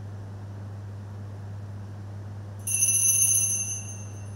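Altar bell rung once at the Mass as the priest raises the chalice: a sudden bright ringing of several high pitches about two and a half seconds in, fading over about a second and a half. A steady low electrical hum lies under it.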